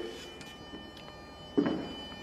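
Faint, steady hiss of wind-tunnel airflow with a few fixed tones, and one short clack about one and a half seconds in.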